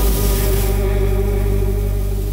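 Hot-air balloon propane burner firing with a steady rushing noise, under background music holding a sustained note.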